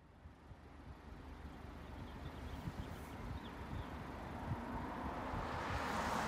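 Outdoor roadside ambience: a steady hiss of road traffic that grows gradually louder, with wind rumbling on the phone's microphone.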